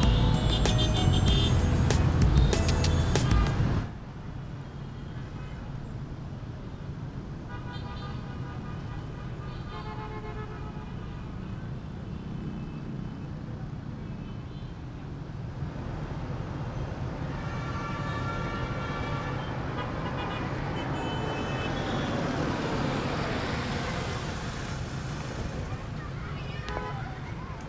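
Music that cuts off abruptly about four seconds in, followed by steady road-traffic noise from motorbikes and cars running, with short horn toots now and then.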